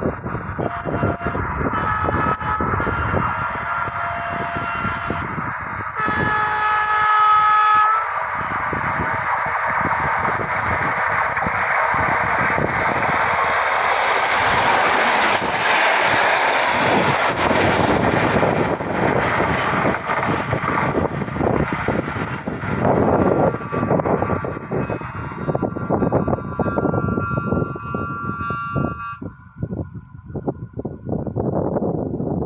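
Renfe UT-470 electric multiple unit sounding a horn blast of about two seconds, then approaching and passing close by at speed, its wheel and rail noise rising to a peak about halfway through and fading as it goes away.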